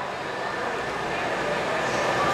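Steady outdoor background noise, an even hum with no distinct events, in a pause between words.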